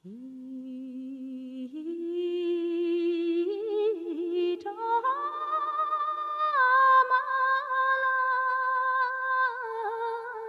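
A single unaccompanied voice singing long, held, wavering notes with no clear words, starting low and climbing in steps to about an octave higher over the first five seconds, then holding near the top.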